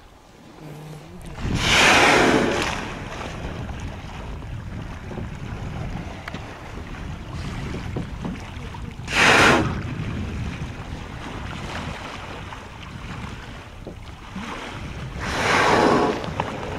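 Humpback whales blowing at the surface beside the boat: three loud breaths of about a second each, one shortly after the start, one around the middle and one near the end. Under them runs a steady rush of wind and sea.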